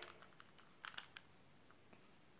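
Near silence with a few faint plastic clicks from a 3x3 Rubik's cube being turned in the hands, a quick cluster of about three about a second in.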